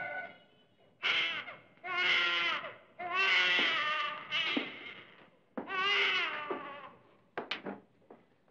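A woman crying aloud in long, wavering wails, about six cries broken by short pauses, the last one brief near the end.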